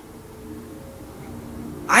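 A quiet lull in which only faint, low sounds are heard from the TV episode's soundtrack playing softly.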